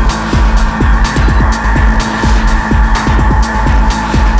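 Hard minimal techno from a DJ mix: a driving low-end beat with ticking hi-hats, a steady droning synth, and many short synth blips that glide quickly downward in pitch, giving it a racing, engine-like texture.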